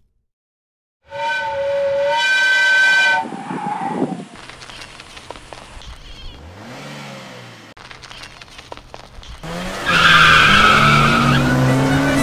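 Cartoon car sound effects. About a second in comes a loud, high, held tire squeal. A quieter stretch follows with a low engine note that rises and falls as a car passes. Near the end there is another loud tire screech over a rising engine note.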